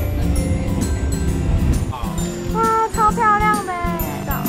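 Cheerful Christmas-style background music with jingle bells over a steady beat. A short pitched phrase that bends up and down comes in over it in the last second and a half.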